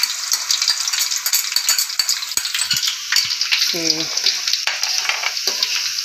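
Minced garlic frying in hot oil in an aluminium wok: a steady crackling sizzle, with a few small clicks of a metal slotted spatula stirring it against the pan.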